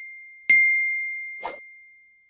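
A bell-like sound-effect ding struck once about half a second in, a clear high tone that rings on and slowly fades, while the tail of an earlier ding is still dying away at the start. A brief soft swish follows near the middle.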